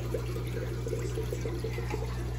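Aquarium water bubbling and trickling steadily from the tank's aeration, over a constant low hum.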